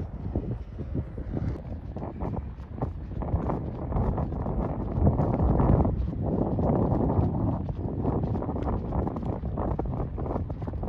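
Wind buffeting the microphone, a low, gusty rumble that swells in the middle.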